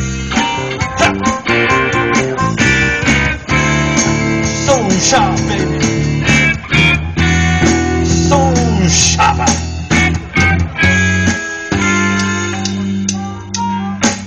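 Live blues band playing an instrumental break: electric guitars over bass guitar and drums, with some bending notes in the lead.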